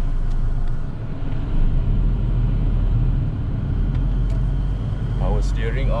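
Steady low rumble of a 1989 Toyota Corona GLi's 2.0-litre 3S-FE engine running at low speed, heard from inside the cabin, with a couple of faint clicks.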